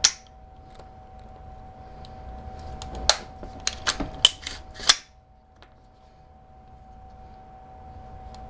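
AR-15 action being worked by hand: metallic clicks of the trigger, hammer and safety selector as the trigger is dry-fired and checked after fitting an adjustable grip screw that takes out trigger creep. One sharp click comes at the start and a quick run of about five clicks about three to five seconds in, over a faint steady hum.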